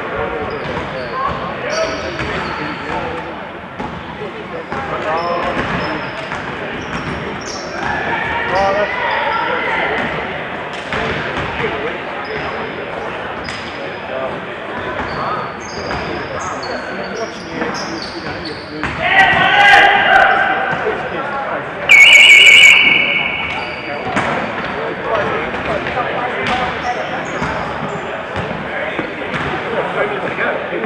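Indoor basketball game: basketball shoes squeak in short high chirps on the court, the ball bounces, and players and spectators call out, echoing in the hall. A little over halfway through there is a loud shout, and then a steady electronic buzzer sounds for just over a second, the loudest sound here.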